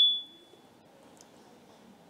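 A high, steady whistle-like tone fades out within the first half second, then near silence: faint room tone.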